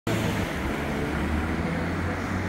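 A van driving past close by: a steady low engine rumble with tyre and road noise.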